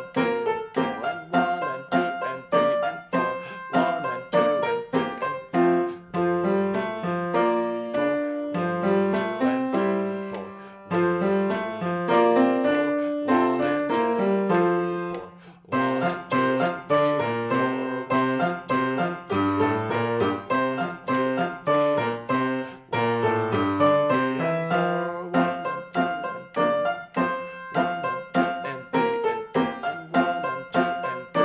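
Grand piano playing a simple two-hand piece at a brisk, even tempo, with a metronome clicking steadily at 100 beats a minute under it.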